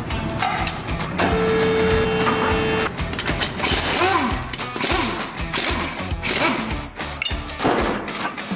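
Background music, with a pneumatic impact wrench running in one steady burst of about a second and a half, starting about a second in, as it undoes a car's wheel nuts.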